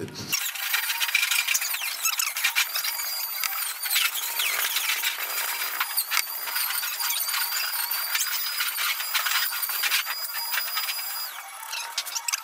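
Styrofoam being scraped and raked, a continuous high-pitched scratching squeal with several steady high tones running through it.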